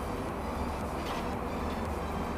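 Steady low background rumble, with a faint metallic click about a second in as a wrench works the coilover's lower lock ring loose.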